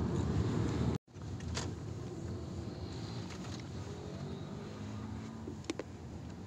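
Car interior noise while driving: steady engine and road rumble. The sound drops out abruptly about a second in, then continues as a quieter steady hum with a sharp click near the end.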